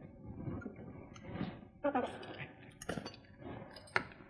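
Faint light clinks and knocks of kitchenware being handled on a countertop as a small portable blender cup is picked up, with a sharper click near the end.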